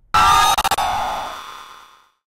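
Sudden loud stinger sound effect: a harsh, high-pitched screech with a few quick clicks in it, fading out over about a second and a half.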